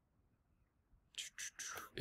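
Near silence, then a little over a second in, a few short, soft breathy hisses from a man's voice just before he speaks.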